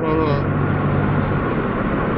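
Road and engine noise inside a moving car's cabin: a steady rush with a low engine hum that drops away about a second and a half in.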